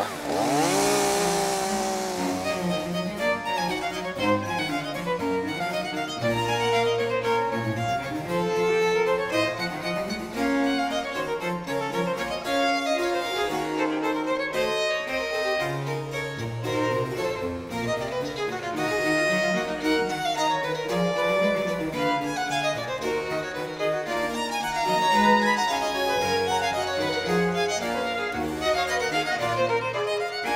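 Classical background music led by violin and other bowed strings. A chainsaw revs and dies away under it in the first couple of seconds.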